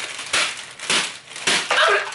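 A plastic packet of Ppushu Ppushu dry ramen noodles being squeezed and beaten by hand to break up the noodles before eating them raw. The crinkling plastic and cracking noodles come in about five quick bursts, each about half a second apart.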